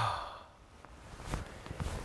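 A man's long, audible sigh, loudest at the start and fading within about half a second, followed by a few soft rustling sounds about a second and a half in.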